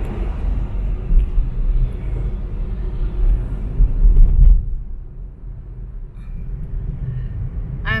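Road rumble inside a moving car's cabin, tyre and wind noise over a steady low drone. About halfway through the noise drops to a quieter, lower rumble.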